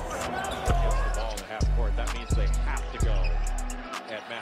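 Background hip-hop beat: deep sustained bass notes, regular drum hits and fast hi-hat ticks, laid over game audio with voices underneath.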